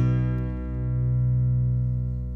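Guitar chord of the song's instrumental outro, struck at the start and left to ring, its higher notes fading away over a steady low held note.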